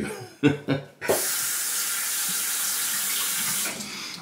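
Tap water running into a sink, a steady hiss that starts abruptly about a second in, lasts nearly three seconds, and tapers off near the end.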